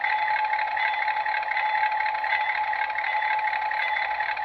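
Lionel Custom Series 2398 model diesel locomotive's onboard sound system playing its bell effect, ringing steadily, with the locomotive's hot-rod-style engine sound idling underneath.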